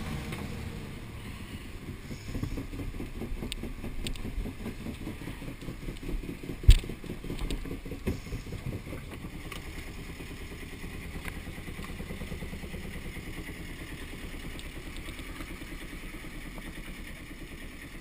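Sailboat's engine running steadily under way, a dense low throb, with one sharp knock about seven seconds in and a few lighter clicks.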